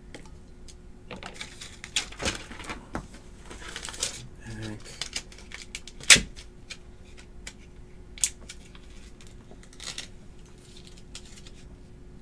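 Irregular clicks and taps of typing on a computer keyboard, with one sharper knock about six seconds in.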